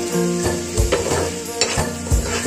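A metal spoon stirs and scrapes through bitter gourd pickle frying in a pan, with the oil sizzling. Background music with a regular beat plays over it.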